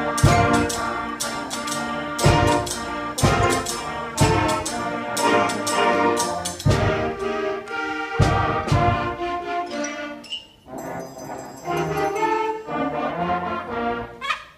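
Middle-school concert band playing: brass and woodwinds in full chords over heavy percussion strokes. The band drops quieter about ten seconds in.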